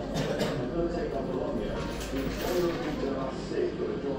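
Indistinct background voices, mixed with the electronic sounds of a Fishin' Frenzy fruit machine spinning its reels on autoplay.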